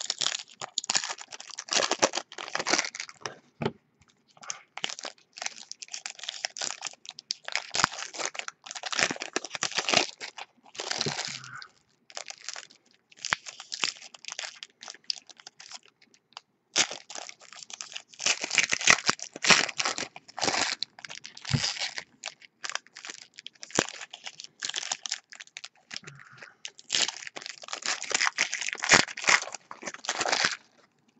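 Foil wrappers of 2017 Donruss baseball card packs being torn open and crinkled by hand. The rustling comes in bursts a few seconds long with short pauses between.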